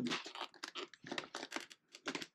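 The plastic clip-on mount of a Cardo PackTalk intercom being pushed in between a Scorpion EXO helmet's shell and its inner padding: a run of short, irregular scraping and crackling rubs.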